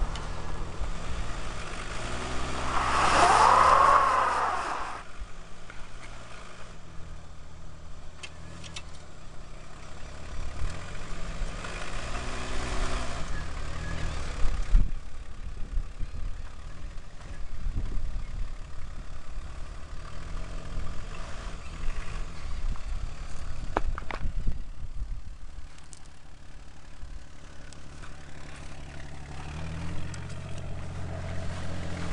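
AMC Eagle's engine revving in repeated surges as the four-wheel-drive car tries to pull out of soft beach sand where it is stuck. The loudest part is a rising-then-falling whine about three seconds in, with a few sharp clicks later on.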